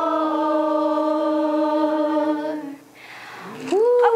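A woman's voice singing one long held note of a worship song, fading out a little before three seconds in; a voice starts again, sliding up and down, just before the end.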